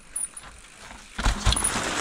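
A mountain bike rolling past close by on a dirt trail. Its tyre and rattle noise sets in a little after a second in, with two low thumps.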